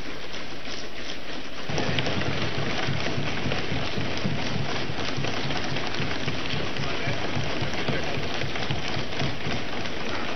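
Assembly members applauding by thumping their desks and clapping, a dense, steady patter that grows louder and heavier about two seconds in, with voices mixed in. It is the house's applause at the close of a speech.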